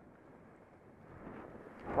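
Faint steady hiss of skis sliding over groomed snow, mixed with wind on the microphone, growing a little louder in the second half.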